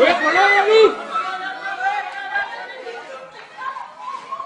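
People's voices, shouting and calling out, loud for about the first second and then dying down to fainter scattered calls.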